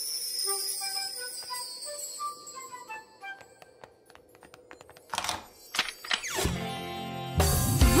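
Cartoon magic sound effects: a shimmering sparkle, then a climbing run of light chime notes as the flying key glitters, followed by a few clicks and two short whooshes as the door is unlocked and opened. Upbeat children's music with a steady beat comes in near the end.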